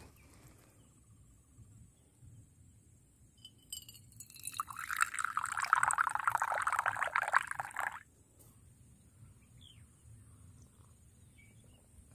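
Coffee poured from a thermos flask into an enamel mug: a steady stream of liquid for about three seconds, starting about four seconds in and cutting off suddenly.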